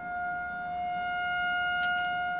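A steady tone held at one pitch, with overtones, and a faint click near the end.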